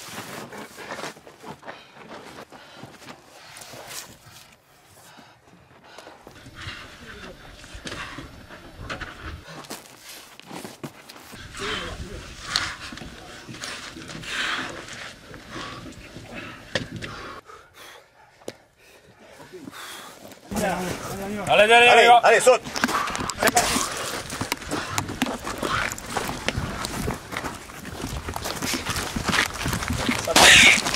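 A soldier crawling through a concrete pipe: irregular scraping and knocking of boots, kit and body against the concrete. About three-quarters of the way in, a loud shouted command, "saute!" (jump!).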